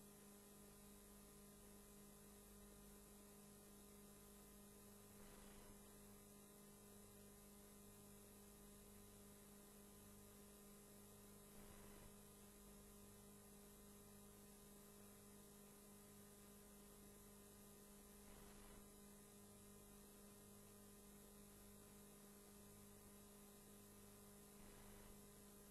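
Near silence: a steady low electrical hum with faint hiss and a few soft, faint noises.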